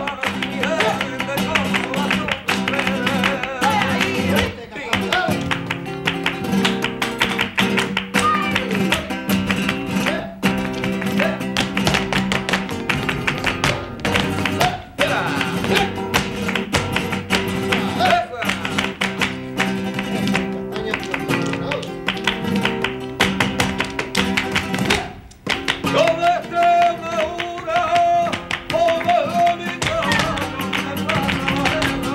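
Flamenco music: Spanish guitar strumming, with rhythmic hand clapping (palmas) and dancers' heel-and-toe footwork (zapateado) clicking sharply over it.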